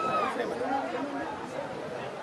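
Several people talking over one another, a low murmur of chatter. A single high voice trails off at the very start.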